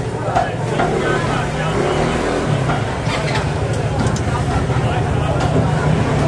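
Dough rings and twists deep-frying in a wok of hot oil, sizzling steadily, with a few clicks of metal tongs against the dough and wok as they are turned. A steady low engine-like hum and market voices run underneath.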